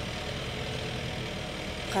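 A motor idling steadily in the background, a low even hum with no change in speed.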